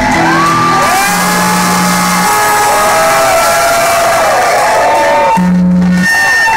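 Heavy metal band playing live through a club PA, with long sustained low bass notes, while the crowd whoops and shouts loudly over the music.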